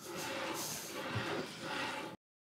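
Quiet rolling of a HepcoMotion GV3 V-guide carriage's wheels pushed back and forth along a track coated in treacle and Weetabix slurry, rising and falling with each stroke, with a small low thud about halfway through.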